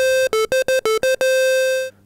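Roland SH-101 monophonic analog synthesizer playing its square-wave oscillator alone: a short held note, a quick run of six or seven short staccato notes, then a longer held note that cuts off just before the end.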